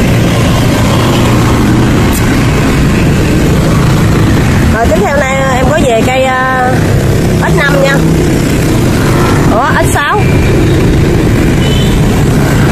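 Steady, loud traffic noise with vehicle engines running throughout. Brief snatches of voice come in about five seconds in and again near ten seconds.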